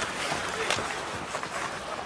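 Ice hockey arena game sound: steady crowd and rink noise, with a few faint clicks from sticks and puck on the ice.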